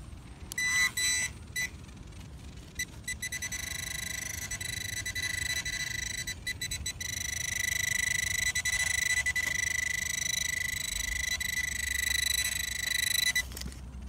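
Handheld metal-detecting pinpointer sounding a high electronic tone that pulses so fast it is almost continuous, growing louder as the probe is worked into the loose dirt beside a buried lead bullet. The tone cuts off shortly before the end.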